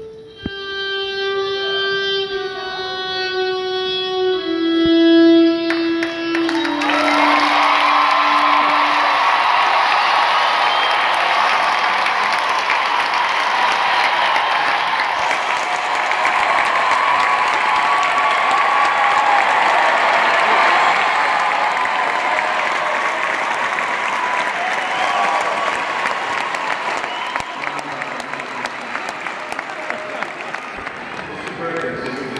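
A slow melody of long held notes, each stepping lower in pitch, fades out about six to nine seconds in. An audience then applauds and cheers steadily for the rest of the time.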